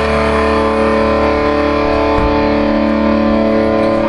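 A rock song's closing distorted electric guitar chord, held and ringing steadily, with no drumming over it.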